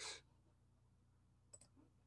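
Near silence: room tone, with a faint short double click about one and a half seconds in.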